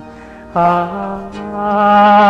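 Music from a Bengali song. After a brief lull, a long sung note starts about half a second in, steps up slightly in pitch and is held, growing louder.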